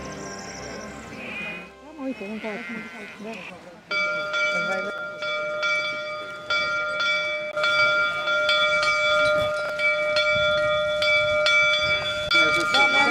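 Sheep bleating briefly, then from about four seconds in church bells ring in an even, repeated peal, each strike leaving a sustained ringing tone.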